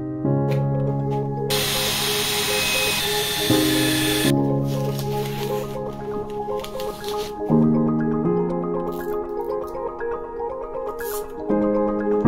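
Background music of soft mallet-percussion chords, changing every few seconds. About a second and a half in, a cordless drill runs for about three seconds, boring through the plastic water tank.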